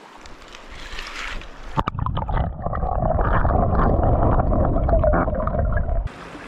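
A mountain brook's flowing water heard from under the surface: after a sharp knock about two seconds in, a loud, muffled, steady rumbling and gurgling with the high end cut away.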